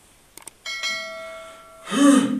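Two quick mouse-click sounds, then a bright bell chime struck twice and fading: the click-and-bell sound effect of a YouTube subscribe-button animation. Near the end comes a louder hit with a low ring.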